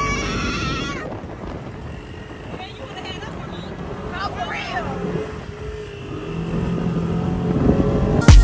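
Side-by-side dune buggy's engine running while driving over sand dunes, with wind buffeting the microphone; the engine grows louder near the end. Voices call out briefly at the start and again around three to four seconds in.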